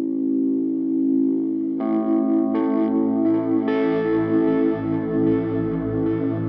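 Instrumental post-rock: an effects-laden electric guitar holds a sustained chord, and further ringing guitar notes are layered on top about two seconds in, building up the sound.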